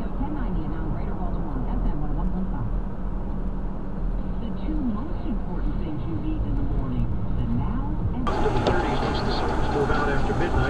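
Steady road and engine rumble inside a car cabin, with a car radio's talk voices faint under it. About eight seconds in, the sound changes abruptly to a brighter, noisier road rumble.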